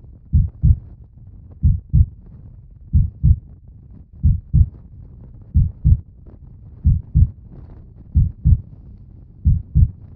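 A slow, low double thump repeating like a heartbeat (lub-dub), one pair about every 1.3 seconds, eight pairs in all.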